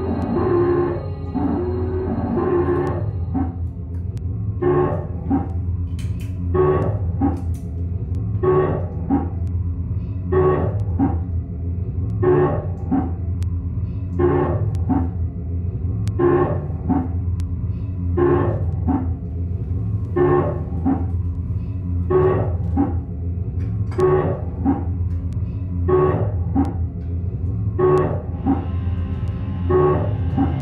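Improvised experimental drone music: a steady low electric-bass drone with a short, effects-processed sound repeating about once a second over it, like a loop. Near the end a denser, fuller layer comes back in.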